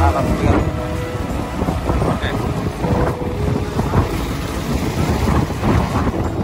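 Strong wind buffeting the microphone: an uneven, gusting low rumble.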